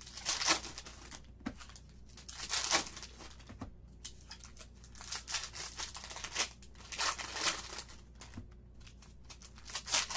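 Plastic-foil wrapper of a Prizm basketball trading-card pack being torn open and crinkled by hand. It comes in several short bursts of tearing and crinkling, a couple of seconds apart.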